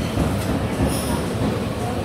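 Steady dining-room noise of a crowded buffet restaurant: a low rumble with indistinct background chatter of many people.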